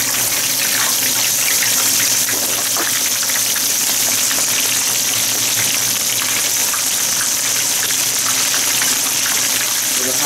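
Battered whole fish deep-frying in a wok of hot oil: a loud, steady sizzle dense with tiny crackles.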